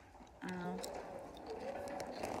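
A woman's short closed-mouth "mm" sounds, twice, made while chewing crisps.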